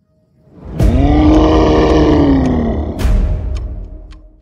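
A loud roar sound effect of a large animal, swelling in about a second in, its pitch rising and then slowly sinking over about two seconds, with a sharp hit about three seconds in before it fades out.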